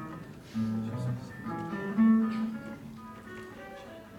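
Two nylon-string acoustic guitars played together in a duet of plucked notes, with deep bass notes sounding about half a second and two seconds in.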